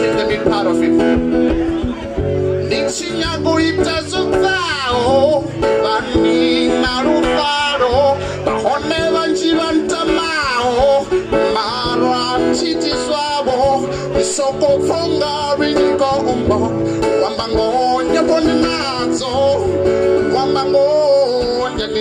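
A man singing while strumming and picking an acoustic guitar, both amplified through PA speakers, the guitar's chords sounding steadily under a wavering vocal melody.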